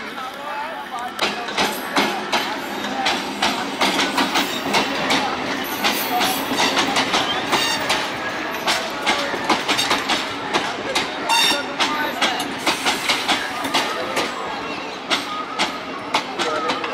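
MEMU electric commuter train running past close by, its wheels clattering in a dense, irregular run of clicks from about a second in.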